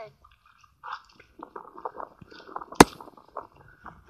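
Faint, close clicks and small smacking noises, with one sharp click about three seconds in.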